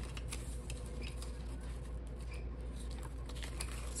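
Paper banknotes being handled and counted by hand: soft, scattered rustles and flicks of paper bills over a steady low background hum.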